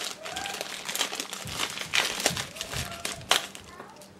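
Thin clear plastic bag crinkling and crackling in the hands as coiled cables are worked out of it, in an irregular run of sharp crackles; the sharpest comes a little after three seconds in.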